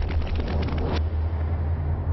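Deep, steady low rumble. For about the first second a hiss sits on top of it, then the hiss cuts off abruptly.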